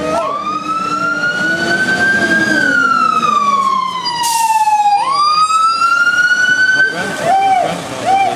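Fire engine siren wailing: a slow rise, a long slow fall, then a quick rise again, with the truck's engine running underneath. A short hiss cuts in about four and a half seconds in.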